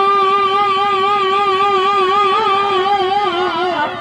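Shehnai, the double-reed pipe of Chhau dance music, holding one long, loud note with a slow vibrato. The note wavers more near the end and cuts off just before the end.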